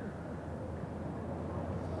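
Hushed stadium crowd murmur over a steady low hum, the quiet held while sprinters wait in the set position for the starter's gun.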